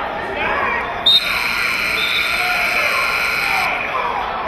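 An electronic buzzer or scoreboard horn in a gym starts abruptly about a second in and holds one steady tone for about two and a half seconds, then cuts off, over crowd chatter.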